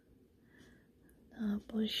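A woman speaking, starting after about a second and a half of quiet.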